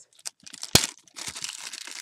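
Clear plastic packaging bag crinkling as it is pulled open by hand, with one sharp snap about three quarters of a second in, the loudest moment.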